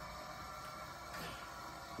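Quiet room tone: a faint steady hiss with no distinct sound.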